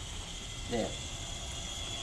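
Benchtop flash point tester running with a steady mechanical whir and a faint high whine.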